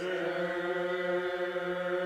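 Voices singing a hymn, holding one long steady note through the whole stretch.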